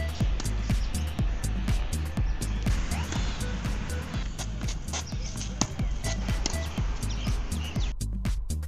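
Background music with a steady, driving beat and deep bass notes.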